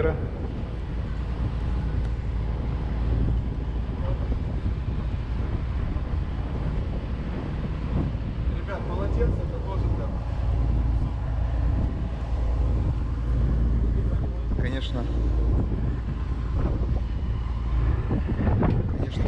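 Tour boat's engine running steadily under way, a continuous low drone, with faint voices of passengers about nine seconds in and again near the end.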